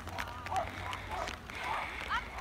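Distant, indistinct voices of people with a steady low rumble underneath and a few scattered light clicks.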